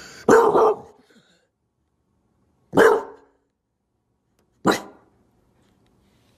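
English bulldog barking: three short, loud barks spaced about two seconds apart, the first one near the start.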